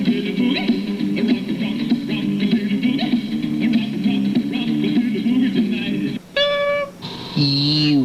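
Electric guitar riff played by an answering machine as the end of its outgoing message, lasting about six seconds, followed by a single short electronic beep, the cue to start recording a message.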